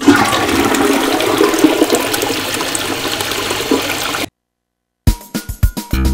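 A toilet flushing: water rushing steadily through the bowl, cut off suddenly about four seconds in.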